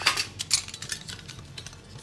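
A metal pencil case and its pencils being handled, giving a few sharp clicks and clinks. The strongest come right at the start and about half a second in, then lighter ticks die away.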